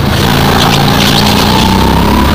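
Go-kart engine running loud as the kart comes through a corner, with a faint whine that slowly rises in pitch as it picks up speed.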